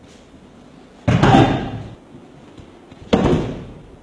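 A judoka thrown with a one-arm shoulder throw (ippon seoi nage) landing on the judo mat: two loud slamming thuds about two seconds apart, each dying away quickly.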